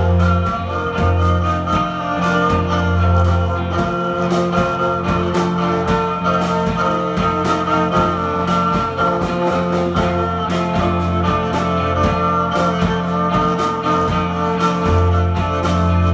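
Live band playing an instrumental passage: bowed viola over guitar, with a low note held underneath and regular strummed strokes.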